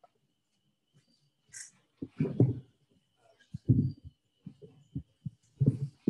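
Irregular low thumps and knocks as a microphone stand is moved and adjusted, starting about two seconds in, with five or six heavier bumps.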